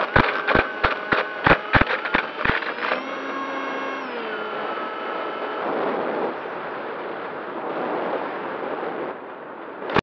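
Onboard sound of a small radio-controlled vehicle speeding over a plowed field. First comes a quick run of about ten sharp knocks, roughly three a second, as it bounces over the furrows. Then its motor whines and drops in pitch about four seconds in, and a steady rush of wind and dirt noise follows.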